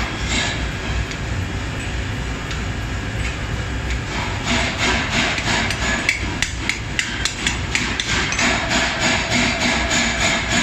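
Hammer blows on a red-hot steel broad axe head held in tongs on an anvil, a quick run of sharp strikes at about three a second starting about halfway through. Factory machinery rumbles steadily underneath.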